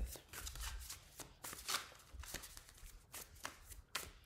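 Tarot cards being shuffled by hand: a string of short, irregular rustling riffles, a few each second.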